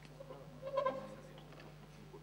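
A brief, indistinct voice sound about a second in, short and pitched like a single called-out word, over a steady low hum.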